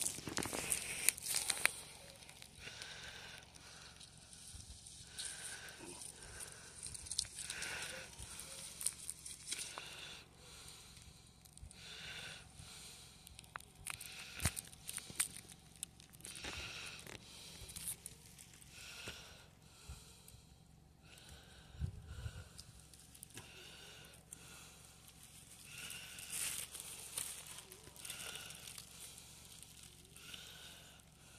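Faint rustling and crinkling of a grave blanket's evergreen boughs, artificial poinsettias and ribbon bows as they are arranged by hand, with soft puffs about every two seconds.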